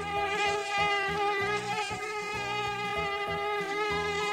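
Mosquito in flight, its wingbeat whine a steady buzzing tone that wavers slightly in pitch.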